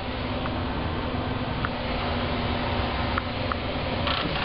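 Steady whirring of a Comet follow spotlight's cooling fan, recorded close up, with a constant low hum and a few faint clicks.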